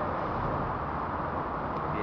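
Steady low background rush of a large indoor hall, with no distinct impacts.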